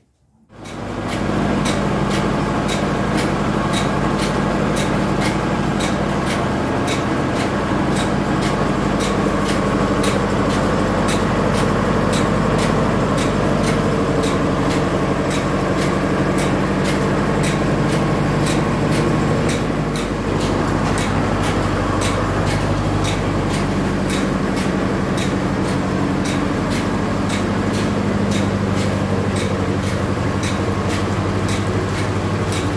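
A motor-driven sugarcane crushing mill (trapiche) running steadily under load as cane is fed through its geared iron rollers: a loud, constant mechanical drone with a fast, regular clicking from the gearing.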